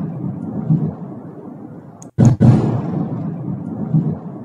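Large explosion from a strike on a military base: a loud low boom that rolls off in a long rumble, then, after a moment's break about two seconds in, a second sudden boom that again fades in a rumble.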